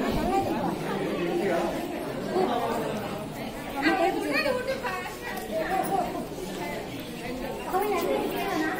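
Indistinct chatter of several people talking at once, echoing in a large stone hall.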